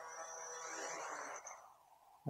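KEHRC K11 Turbo drone's propellers whirring faintly with a steady whine as it touches down, then the motors stopping about a second and a half in.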